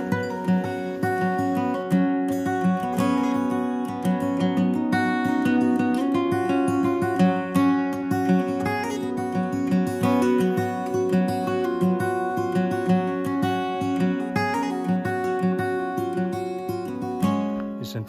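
Background music of a strummed acoustic guitar, in a steady rhythm.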